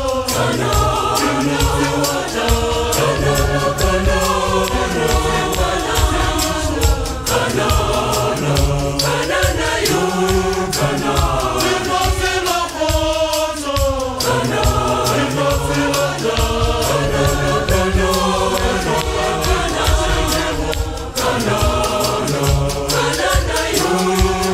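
A large choir singing a gospel song in harmony, many voices together, over a steady percussive beat.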